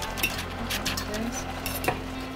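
A metal fork stirring noodles in a stainless steel pot, clinking against the pot a few times.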